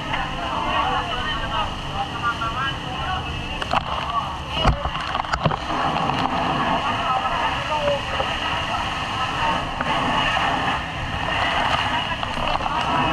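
Steady rumbling noise of a fire truck, with people talking over it and two sharp knocks about halfway through.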